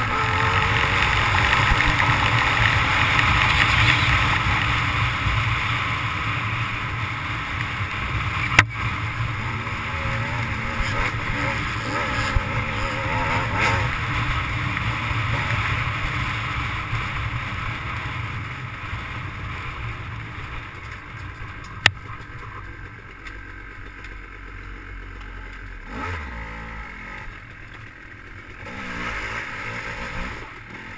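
Dirt bike engine running on a trail ride, revving under way and loudest in the first part, then easing off over the second half. Two sharp short knocks cut through, one about a third of the way in and one past two-thirds.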